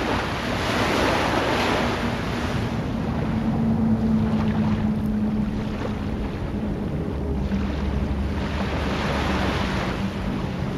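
Rushing sea surf, swelling about a second in and again near the end, over a low steady hum.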